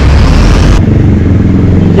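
Street traffic: a motor vehicle's engine running steadily. It follows a loud rushing noise that cuts off abruptly about a second in.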